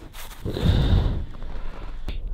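Low rumbling, rustling noise for about a second as a crashed drone is gripped with a glove and pulled out of the snow: handling noise and snow rubbing against the drone and microphone.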